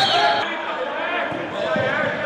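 A handball bouncing on the hard indoor court during play, with voices calling out in the hall.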